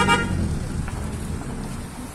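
Low, steady rumble of outdoor background noise, with the last syllable of a woman's voice at the very start.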